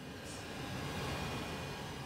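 A fan running steadily: a faint, even hiss with a thin, high, steady whine.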